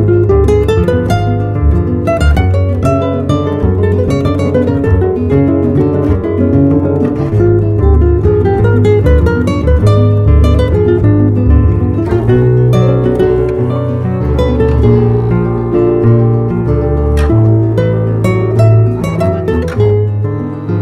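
Background music: a guitar playing a melody of plucked notes.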